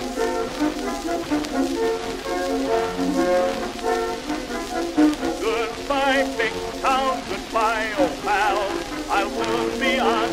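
Early Victor 78 rpm shellac record playing an instrumental passage by an orchestra in steady sustained chords, with a wavering, vibrato-laden melody line rising above it from about halfway through. An even surface hiss and crackle from the disc runs underneath.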